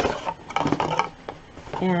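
A cardboard BoxyCharm subscription box being opened and handled, a quick run of clicks and rustling in the first second or so.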